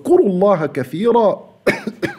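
A man speaking, then a single short cough about a second and a half in.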